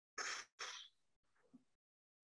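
Two short breathy puffs of air from a person, an exhale or sigh through the mouth, in quick succession about a third of a second apart.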